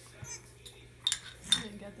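A metal spoon clinking twice against a glass baby food jar while scooping food, about a second in and again half a second later.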